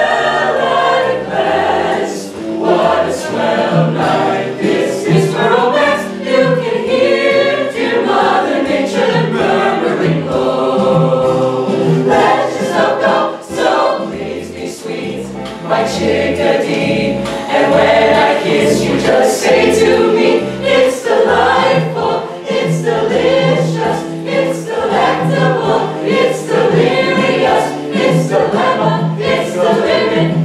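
Mixed-voice high school show choir singing an upbeat song over a steady beat with a regular bass line.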